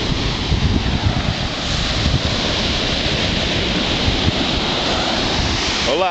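Ocean surf breaking on a sandy beach, a steady rushing wash of waves at high tide, with wind buffeting the microphone in uneven low rumbles.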